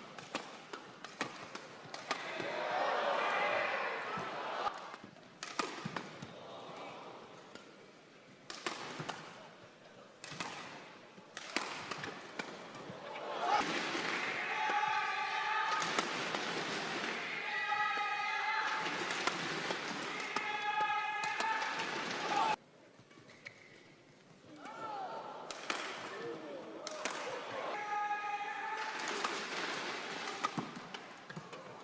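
Badminton rackets striking a shuttlecock in quick, sharp cracks during a fast doubles rally. Between the shots the crowd shouts and cheers in waves.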